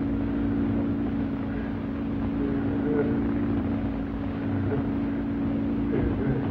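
A steady electrical hum of laboratory apparatus, several low tones held level and unbroken, with a low rumble beneath.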